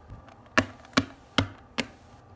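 Four sharp taps evenly spaced about 0.4 s apart: a small plastic toy figurine being hopped along a tabletop as if walking.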